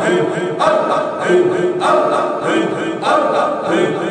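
A group of voices chanting a short phrase over and over, unaccompanied, with each repeat starting about every 1.2 seconds.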